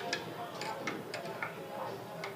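A steel spoon stirring dissolved yeast in a small glass bowl, knocking against the bowl in a handful of light, irregular clicks.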